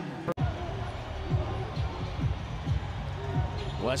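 A basketball dribbled on a hardwood arena court, bouncing two or three times a second, over steady arena background music and faint voices. There is a short break in the sound about a third of a second in.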